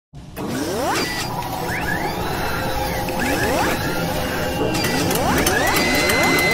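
Sound effects for an animated robot-arm logo intro: a series of rising mechanical whirs like a robot arm's servos, with a run of clicks near the end.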